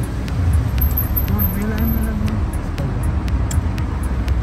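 Inside a slow-moving car: steady low engine and road rumble, with faint voices and light regular ticking about three times a second.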